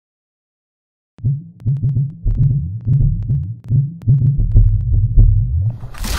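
After about a second of silence, a deep electronic throb pulses about four times a second with clicks on top and grows louder. Near the end it gives way to a rushing swell of noise: a sound-design effect for an animated logo.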